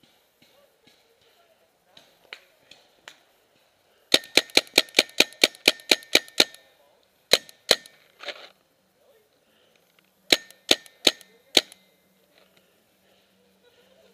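Paintball marker firing close by: a rapid string of about fourteen shots at roughly six a second, then two more shots, and later a quick run of four.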